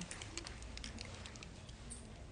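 Faint, scattered light clicks and taps from hands handling small objects, over a low steady room hum.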